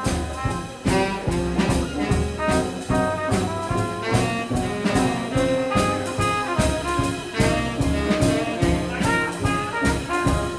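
Live traditional jazz band playing an instrumental passage: trumpet and other horns carry the melody over a strummed banjo, drum kit and upright bass keeping a steady beat.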